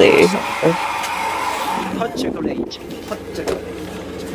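A young man speaking briefly in Japanese, then a steady hum of outdoor background noise that drops away about halfway through.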